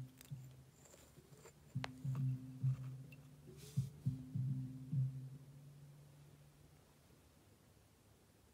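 Faint music, mostly a few low bass notes in two short phrases that fade out near the end. It comes from a loudspeaker with no amplifier connected, driven only by magnetic crosstalk between two steel-core crossover inductors. A few small handling clicks come early on.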